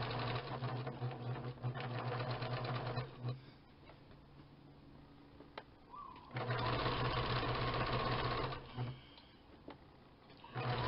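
Electric sewing machine stitching around the top edge of a fabric tote bag. It runs steadily, stops about three seconds in, starts again a little after six seconds, and stops near nine seconds after a brief final burst.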